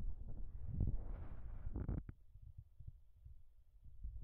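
Handling noise from a phone held by hand against a telescope eyepiece: rustling with a few sharp clicks that stop about two seconds in, then a faint low rumble.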